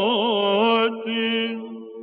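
A male cantor's voice chanting a Byzantine hymn in the plagal fourth mode, with quick melismatic ornaments. The line breaks briefly about a second in, resumes, and then fades away over the second half, while a steady low drone note holds on underneath.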